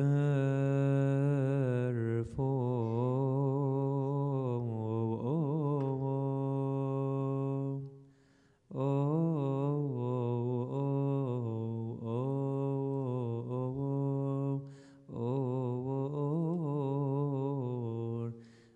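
A man chanting a long melismatic Coptic liturgical chant solo, holding drawn-out notes that waver in pitch. He breaks off briefly twice, a little before halfway and again about three seconds from the end.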